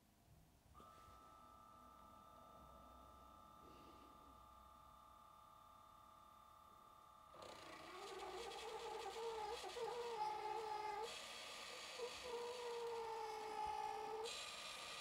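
The small electric water pump of a ThirdReality smart watering kit running: a steady, wavering hum-whine that starts about halfway through, after near silence, and shifts slightly in pitch a few seconds later. Way louder than expected for a plant-watering pump.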